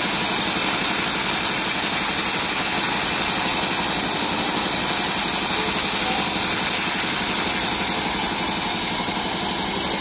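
Everlast RedSabre 301 pulsed laser cleaner firing its scanning beam on a rusty steel plate and stripping the rust back to bare metal, with a loud, steady hissing buzz.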